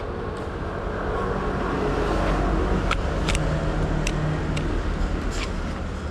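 A motor vehicle passing on the street, its engine rumble swelling about a second in and easing off near the end. Several sharp clicks and knocks from a camera rig being handled come through in the second half.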